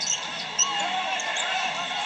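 A basketball being dribbled on a hardwood arena court, over the steady noise of the arena crowd.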